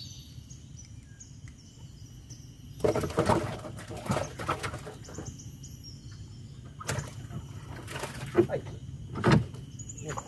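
Birds chirping faintly, with a few sharp knocks in the second half.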